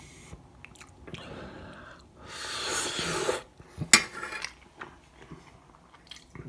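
A person eating instant noodles with a fork from a metal saucepan: quiet mouth and utensil noises, a louder noisy sound of about a second a little after two seconds in, and a sharp clink of the fork against the pan near four seconds in.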